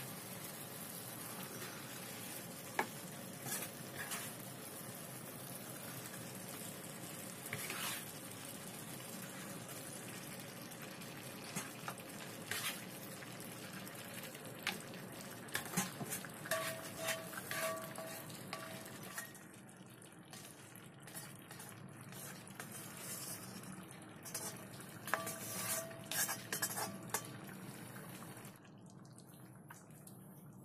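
Beef short ribs in black pepper sauce sizzling in a hot wok while a spatula scrapes and clatters against the pan, scooping the meat into a claypot. The steady sizzle drops away about two-thirds of the way through, leaving scattered scrapes and taps.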